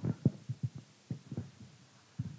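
Soft, irregular low thumps of a handheld microphone being handled, about four or five a second.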